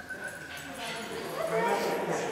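A dog giving short high-pitched cries: a thin held note at the start and a louder rising call near the end.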